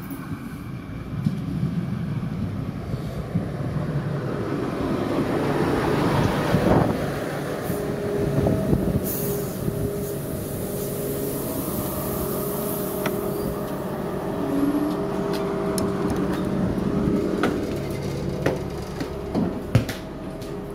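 ÖBB class 5047 diesel railcar pulling in alongside the platform: its diesel engine runs steadily while the wheels roll past close by, loudest about six to seven seconds in, followed by a hiss for a few seconds as it comes to a stand. Near the end come a few sharp clicks and knocks as the railcar is boarded.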